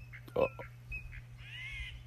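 Wild birds calling: a few short high notes, then one longer arched call near the end.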